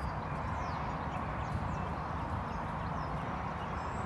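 Hoofbeats of a horse walking on soft paddock earth, over a steady background hiss with birds chirping high and thin.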